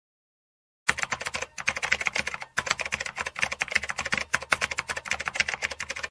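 Keyboard typing sound effect: a fast, dense run of clicks that starts about a second in, pauses briefly twice, and cuts off abruptly at the end. It accompanies text appearing on screen.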